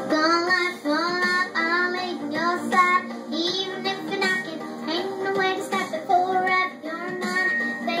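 A young girl singing a pop song into a handheld microphone over a backing track, her voice gliding and wavering through sustained notes.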